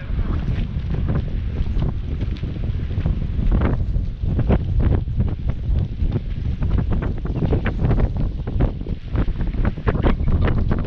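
Wind buffeting the camera's microphone: a loud, constant low rumble broken by frequent short pops and gusts.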